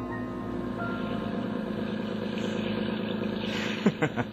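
Radio-drama sound effect of a motorboat engine running steadily, with the tail of an orchestral music bridge fading beneath it. A brief sharp sound comes just before the end.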